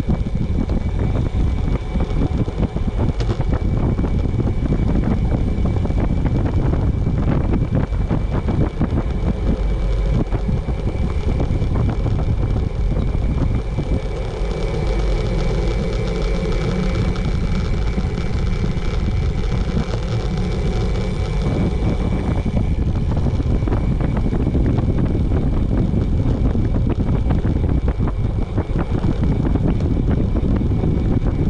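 Wind rushing over the microphone of a camera on a moving bicycle: a steady, loud, low rumbling rush.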